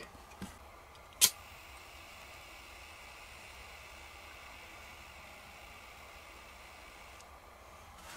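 A hand-held lighter clicks once, sharply, about a second in, then gives a faint steady gas hiss while it is held lit, stopping shortly before the end.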